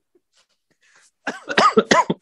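A man coughing several times in quick succession into his hand, mixed with laughter, starting a little over a second in.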